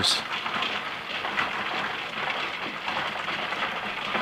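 Rotary rock tumblers running: a steady, dense rattle of stones turning inside the rotating barrels.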